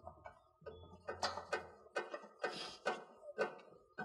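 Clicks and light metallic knocks of a refrigerant gauge-hose coupler being fitted and threaded onto the brass liquid-line service port of a condensing unit, about six in a row with short scrapes between.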